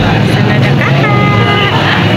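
Background music with a held note about a second in.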